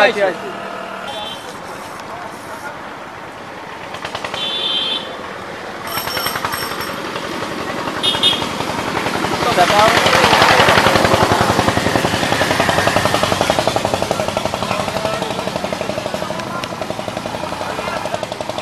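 A small engine running with a rapid, even knock. It grows louder about ten seconds in and keeps going.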